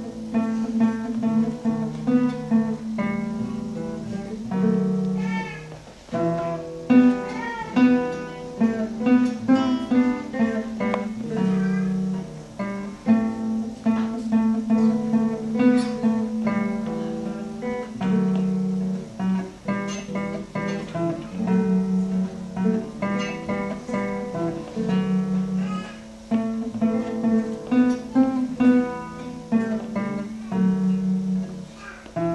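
Two nylon-string classical guitars playing a duet: a plucked melody over a repeating low accompaniment figure.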